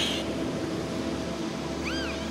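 Dolphin calls over ambient synthesizer music with sustained tones: a brief noisy squeal right at the start, and near the end a short whistle that rises and falls.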